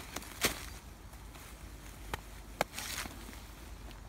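A few sharp clicks over light rustling as 5/16-inch plastic sap tubing is cut and handled. The loudest click comes a little past halfway.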